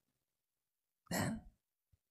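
A man clears his throat once, briefly, about a second in, after near silence.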